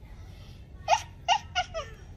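A person laughing in four short chuckles in quick succession, beginning about a second in.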